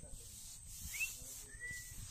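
Faint whistled bird calls from the forest: a short rising-and-falling chirp about halfway through, then a longer level whistle. Behind them, a steady high insect trill and low wind rumble.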